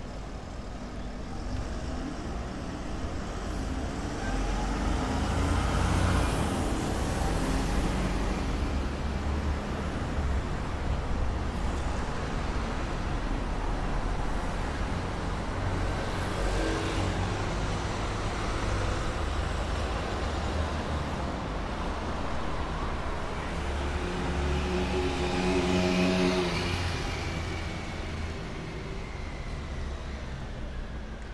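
City street traffic: road vehicles passing by over a steady low rumble. It swells about six seconds in and again a few seconds before the end, where a passing engine's note rises and fades.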